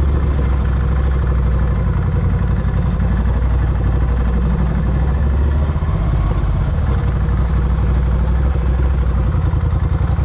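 Motorcycle engine running steadily at low speed while riding on a dirt track, a continuous low pulsing drone with no revving.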